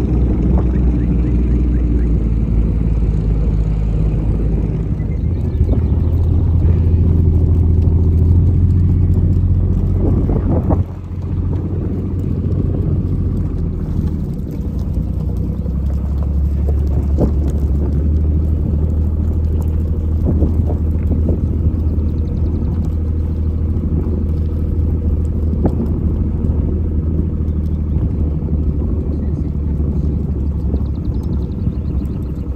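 A vehicle engine running steadily at low speed, following the flock at walking pace. It dips briefly about eleven seconds in and then settles again.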